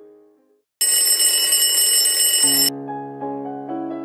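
Alarm clock ringing loudly for about two seconds, then cutting off suddenly. Soft piano music fades out just before it and comes back in as it stops.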